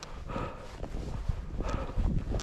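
Footsteps crunching through packed snow at a slow walking pace, about one every second and a half, over a low rumble of wind on the microphone.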